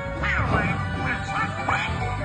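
Donald Duck's raspy, quacking cartoon voice giving several short squawks, the first a falling cry, over the show's orchestral music.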